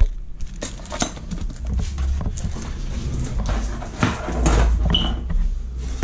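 Unpacking noises: a plastic welding mask and its dark glass filter pane handled over a cardboard box, with irregular rustling, knocks and scrapes, and a brief squeak about five seconds in.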